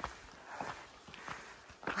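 Soft footsteps on a dry dirt trail, one step roughly every half second or so.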